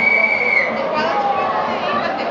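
A whistle sounds one steady high note, just under a second long, that ends about half a second in. Behind it is the noise of a stadium crowd.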